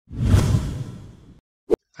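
Whoosh sound effect marking a video transition: a single swoosh that swells quickly and fades over about a second, followed by a short click near the end.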